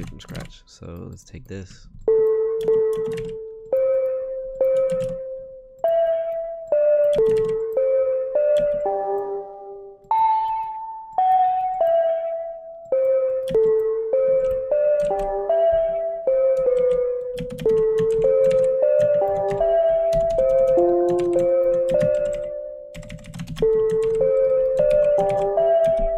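An Omnisphere software-synth bell patch playing a slow melody one note at a time, each note struck and fading, mostly in the middle register, starting about two seconds in. Key clicks clatter softly underneath.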